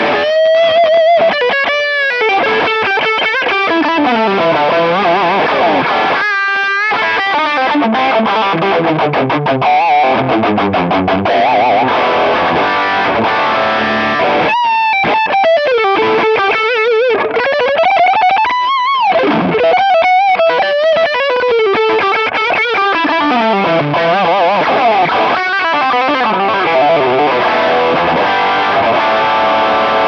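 Distorted Ibanez electric guitar through a Marshall JMP-1 preamp, playing lead lines with long rising and falling runs, bends and vibrato. Short breaks in the phrasing come about six, fifteen and nineteen seconds in.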